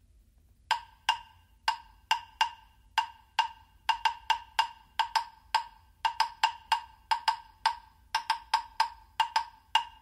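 Pair of hollow-body redwood claves struck together in a rhythmic pattern. Each strike is a sharp wooden click that rings briefly at one clear pitch. The strikes start about a second in and come faster and closer together toward the end.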